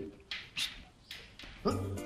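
A golden retriever making two short breaths, one about half a second in and one about a second in.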